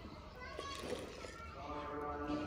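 Faint children's voices in the background, with a couple of light clinks of a steel ladle stirring in an aluminium pot.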